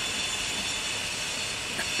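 Steady outdoor background noise: an even hiss with faint high steady tones running through it, unchanged throughout.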